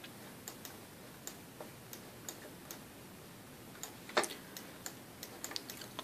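Faint, irregular clicks of a computer mouse button as letters are drawn stroke by stroke in a paint program, with one louder click a little past the middle.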